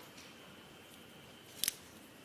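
Quiet room tone with a faint steady high tone, then a brief, sharp double click about a second and a half in.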